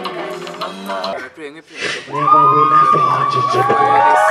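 Young voices chanting and singing together with an acoustic guitar. About two seconds in, several voices hold long high notes together in harmony, each sliding off at its end.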